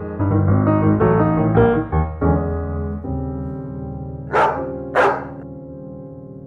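Piano music: a run of notes, then a held chord that slowly fades. Two short dog barks come about half a second apart near the end.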